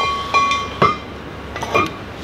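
Compressed-air breathing-apparatus cylinders clinking against each other and the locker as they are laid down: a sharp metallic clink that rings on for most of a second, followed by a few lighter knocks.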